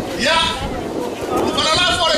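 A man's voice calling out over a public-address system in loud, drawn-out calls with a wavering pitch.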